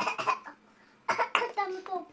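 A person coughing, in two short bouts about a second apart, followed by a brief spoken sound near the end.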